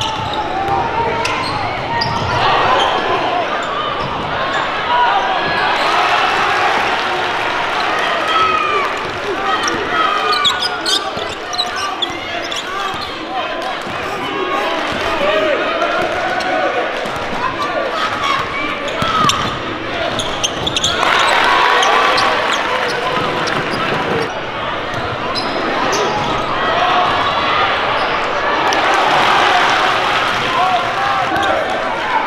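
Basketball being dribbled on a hardwood gym floor during a game, over the steady voices and shouts of players and spectators.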